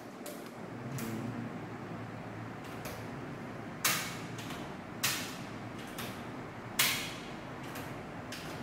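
Miniature circuit breakers in an electrical distribution board being switched on one after another to test the repaired wiring: a series of sharp clicks, the three loudest about four, five and seven seconds in, with fainter ones earlier.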